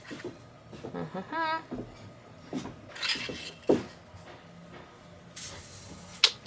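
Light clicks, knocks and scrapes of a dipstick being drawn from a freshly filled marine gearbox and handled against the engine casing and funnel. There is a short wavering tone about a second and a half in, a single knock near the middle and a brief rush of noise near the end.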